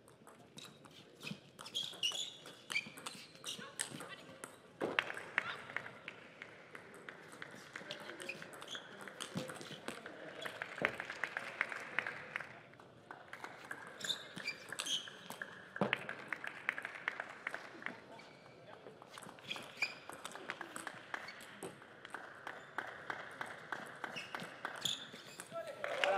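Table tennis rallies: the plastic ball clicking sharply off rackets and the table in quick exchanges, several points in a row, with voices between the points.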